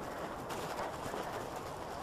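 Bicycle tyres rolling on a crushed-stone path, a steady gritty rolling noise with no distinct knocks.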